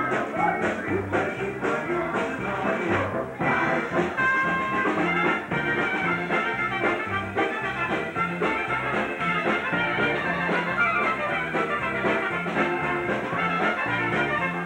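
Live polka band playing a dance tune: trumpets lead over electric keyboard and accordion, with a bass line stepping back and forth.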